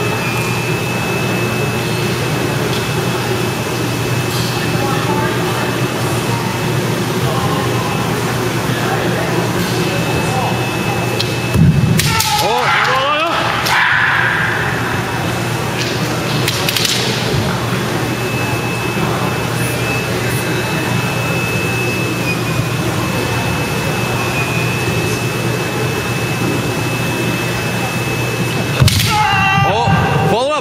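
Kendo bout: steady hall murmur, broken about twelve seconds in by a sharp shinai strike and loud kiai shouts, then another short shout a few seconds later. Near the end there is another sharp hit and more shouting as one fencer goes down on the floor.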